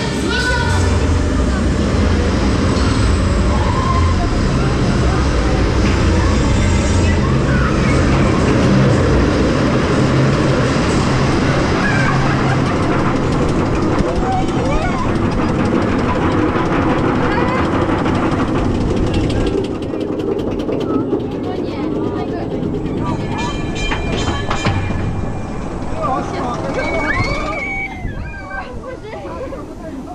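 Baron 1898 dive coaster train climbing its chain lift hill: a steady low mechanical rumble with riders' voices over it. About twenty seconds in the lift noise drops away as the train reaches the top and waits at the holding brake before the vertical drop, with a few clicks and voices.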